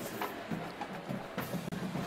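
Drums playing in a football stadium crowd, with a few sharp strikes standing out over a steady background.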